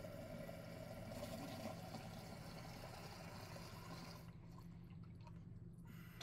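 Water being poured into a glass beaker, faint, dying away about four seconds in, over a steady low hum.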